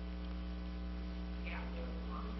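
Steady electrical mains hum, a low buzz with its overtones, in a pause between speech.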